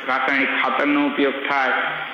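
Only speech: a man lecturing continuously.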